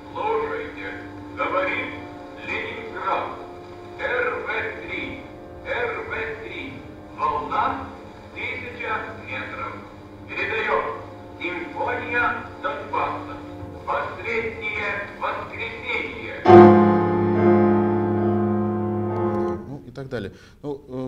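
Recorded contemporary chamber music for string quartet and prerecorded sound: short repeated phrases over a held low tone. About three-quarters of the way in comes a loud sustained chord, which cuts off abruptly just before the end.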